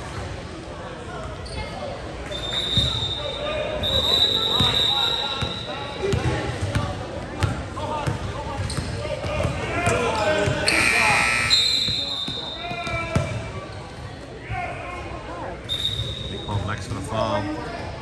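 A basketball bouncing on a gym floor during a game, amid players' and spectators' voices in a large echoing gym. A few brief high-pitched tones cut through, the loudest about 11 seconds in.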